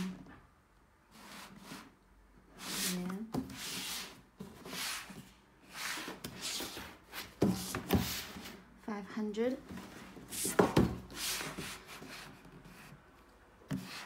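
Cardboard shoebox being turned and slid by hand on a wooden tabletop: rubbing and scraping with a few sharp knocks, the loudest about halfway through and again about three quarters in.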